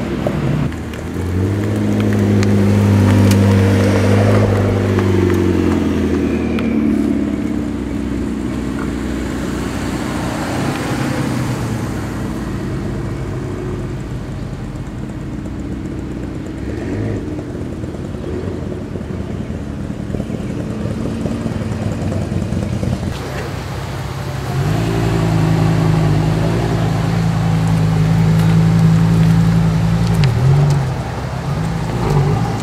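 Sports car engines driving slowly past one after another. A loud engine note for the first few seconds bends and falls away, quieter engine and road sound fills the middle, and another loud, steady engine note holds through the last five seconds.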